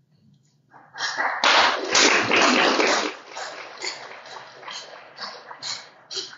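Audience applauding. It swells quickly about a second in, then thins out to a few scattered last claps near the end.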